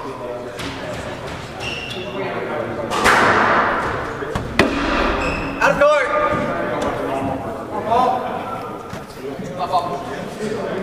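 Squash play in a glass-walled court echoing through the hall: sharp knocks of the ball off racket and walls. A sudden burst of noise from the spectators comes about three seconds in and fades, followed by voices calling out.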